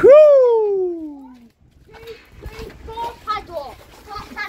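A man's loud, drawn-out "ohhh" that jumps up and then slides steadily down in pitch over about a second and a half, a groan of disappointment. Quieter, indistinct voices, children's among them, follow.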